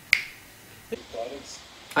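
A single sharp click, like a snap, about a tenth of a second in, followed by a moment of near quiet and a faint, brief murmur of voice before speech resumes.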